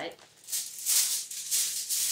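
A sheet of aluminum foil crinkling in a few short bursts as it is handled.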